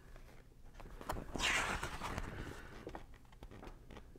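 Page of a large glossy LP-size booklet being turned by hand: a short papery rustle about a second and a half in, with a few light handling clicks around it.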